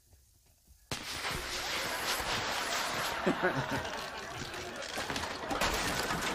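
A sudden blast about a second in, then several seconds of dense, crackling noise, from a TV sitcom's blast or explosion effect.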